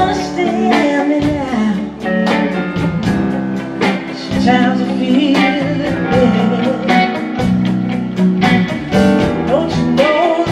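Live band playing blues-rock at full volume: electric guitars, bass, drums and keyboards, with a sung melody line over a steady drum beat.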